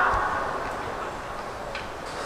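Stadium background noise from the stands, an even hum that fades steadily, with a couple of faint clicks near the end.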